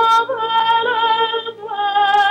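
A woman singing a lullaby solo, holding long notes with vibrato. About a second and a half in she pauses briefly, then takes up a lower held note.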